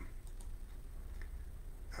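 A few faint, scattered clicks of a computer keyboard over a steady low hum.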